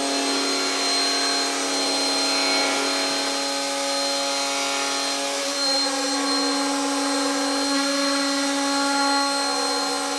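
X-Carve CNC router's Inventables spindle motor running steadily with a constant hum and hiss as its bit engraves lettering into a flat board.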